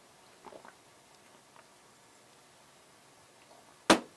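A few faint gulps of someone drinking, then a single sharp knock near the end as a beer glass is set down on the workbench.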